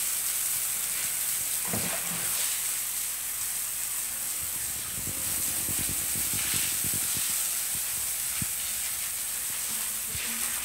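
Water spraying from a garden hose nozzle, a steady hiss, with a scatter of short low knocks near the middle.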